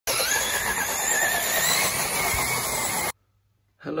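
Electric remote-control car running, its motor whining with a wavering pitch over a loud, steady hiss, cutting off suddenly about three seconds in.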